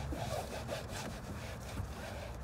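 Microfiber cloth rubbed briskly back and forth over a car's interior door panel, a scratchy wiping stroke repeating about three to four times a second.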